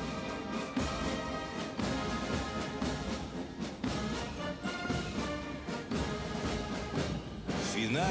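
Military brass band playing a march, brass tones over repeated drum beats.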